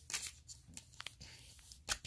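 Small paper magazines rustling and tapping against a plastic toy suitcase as they are put in, a few soft clicks with a sharper one near the end.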